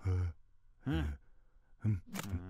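Cartoon character's wordless vocal sounds: three short voiced utterances, the middle one rising and falling in pitch.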